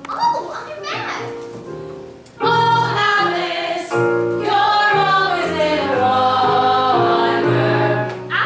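A woman singing a song from a stage musical over instrumental accompaniment. The voice grows much louder about two and a half seconds in, with long held notes that slide downward.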